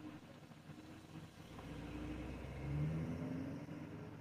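A vehicle engine close by, building up over a couple of seconds with a low rumble and a hum that rises slightly in pitch, loudest about three seconds in, heard from inside a car.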